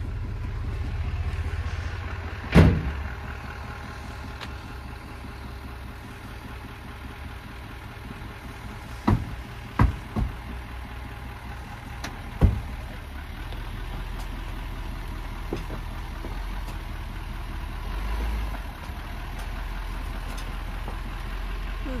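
GMC Sierra 3500's Duramax diesel engine running with a steady low drone as the truck creeps through a tight turn towing a fifth-wheel trailer. A few sharp clunks sound over it, the loudest about two and a half seconds in and a cluster about nine to twelve seconds in.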